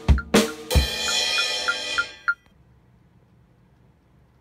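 Acoustic drum kit played with sticks: a few last hits on the drums, then a cymbal crash about a second in that rings on. A final stroke comes just past halfway, and then the sound stops abruptly, leaving only low room noise.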